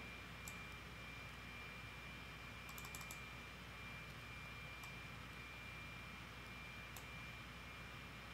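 A few faint clicks of a computer mouse and keyboard: one about half a second in, a quick cluster near three seconds and another near seven seconds. Under them runs a steady low hiss with a thin high whine.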